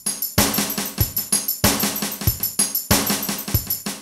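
A Zoom MRT-3 drum machine plays a looping drum pattern sequenced over MIDI: kick, snare and tambourine hits, with stronger strokes about every 1.3 s. The snare and tambourine each carry their own tempo-synced flam repeats.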